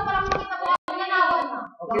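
People's voices talking, with a few sharp taps or claps mixed in and a low thump about half a second in.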